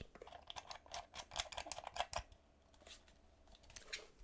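Light clicks and scrapes of a small thumb screw being turned in by hand to fix an aluminium bracket to the side of a portable radio. The taps come quick and irregular for about two seconds, then only a few scattered ones.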